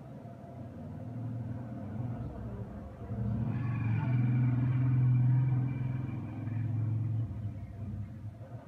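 A low engine-like rumble that swells about three seconds in, peaks in the middle, then fades away near the end.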